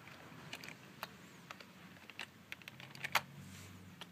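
Keys pressed one at a time on a computer keyboard, a few separate clicks as a short command is typed, the loudest a little before the end.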